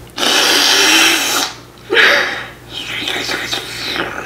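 A drink sucked up through a straw from a plastic tumbler: loud slurping in three long noisy spells, the first and loudest lasting about a second, the last one softer.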